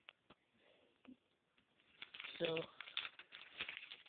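A few faint clicks of small plastic Mega Bloks pieces being handled in the fingers, then a denser clicking rustle from about halfway as the cardboard-and-plastic blind pack is picked up and turned over.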